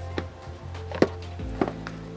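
A small cardboard box being opened and handled: a few light knocks and taps, the sharpest about a second in, over background music.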